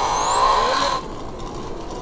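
A homemade 15 kW electric bicycle's brushless motor and speed controller whining as the bike pulls away smoothly. The thin whine rises steeply in pitch through the first second as it gathers speed, then the running sound drops off about a second in.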